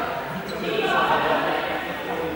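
Indistinct chatter of a group of young people echoing in a large sports hall, swelling a little about a second in.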